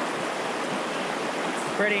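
Creek water rushing through rapids and white water over rocks, a steady, even rushing noise. A man's voice starts near the end.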